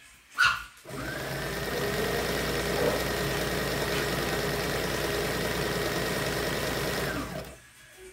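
Electric sewing machine stitching fabric at a steady speed for about six seconds, its motor tone rising briefly as it starts, then holding level until it stops near the end. Just before it starts there is a short, loud sound.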